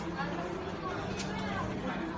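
Indistinct talking and chatter of several voices in a restaurant dining room, over a steady low hum.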